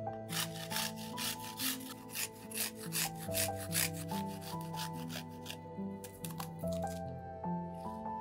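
Garlic cloves being grated on a stainless steel hand grater: quick rasping strokes, about five a second, through the first half, then fainter and sparser. Background music plays throughout.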